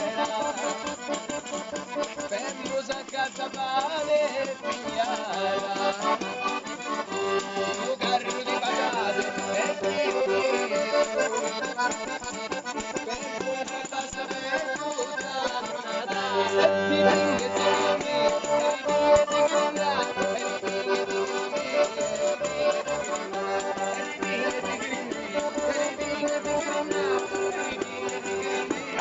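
A Calabrian folk dance tune, a tarantella, played on an organetto (small diatonic button accordion) with a steady rhythmic percussion beat.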